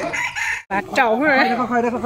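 Chickens calling, including crowing, as several wavering pitched calls in a row; the sound breaks off for a moment about two-thirds of a second in.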